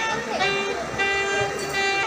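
A wind instrument sounding loud, horn-like held notes: a falling glide about half a second in, then one long steady note, over a murmur of voices.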